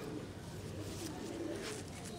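Domestic pigeons cooing softly, a few low coos from the flock.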